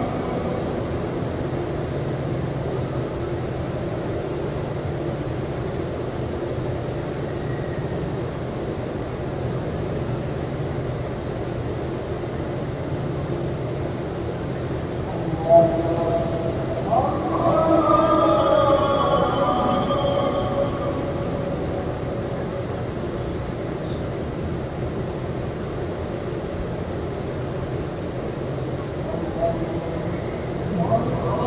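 Steady rumbling ambience of a large outdoor prayer crowd during a silent stretch of the prayer, with a voice rising briefly over it about halfway through.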